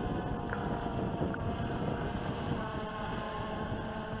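A quadcopter's motors and propellers buzzing steadily as it hovers, held aloft while its battery is run down to the low-battery warning, over a low irregular rumble.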